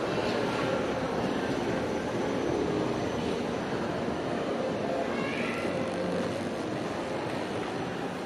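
Steady hum and hiss of a shopping mall's indoor ambience with an escalator running. A brief rising squeak comes about five seconds in.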